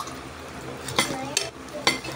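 Dishes and cutlery being handled during a meal: three short, sharp clicks and knocks, the loudest about one second in and just before the end, over a low background.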